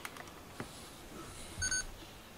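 A few light handling clicks on a small Canon camera, then a short electronic beep from the camera near the end, the loudest sound.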